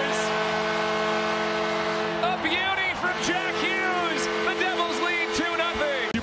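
Arena celebration right after a Devils home goal: a long held multi-note chord like the goal horn and arena music, over crowd noise. From about two and a half seconds in, short high sliding notes come and go.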